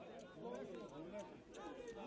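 Faint shouting and calling of many voices at once from footballers and spectators around the pitch, overlapping one another, as players dispute a penalty decision around the referee.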